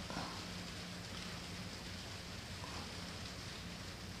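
Faint steady hiss with a low mains-like hum: room tone, with no distinct event.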